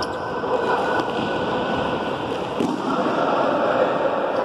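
Echoing hubbub of children's voices in an indoor sports hall, with a single sharp thud about two and a half seconds in.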